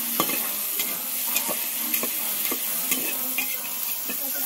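Chopped onions, dried red chillies and curry leaves sizzling in hot oil in an aluminium pressure cooker, stirred with a flat metal spatula that scrapes and clicks on the pan bottom about twice a second.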